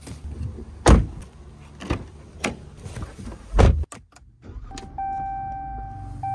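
Knocks and thumps as a cardboard shipping box is set down inside a car and a car door is shut, the loudest about three and a half seconds in. Near five seconds in, the car's steady electronic warning chime starts up over a low engine hum.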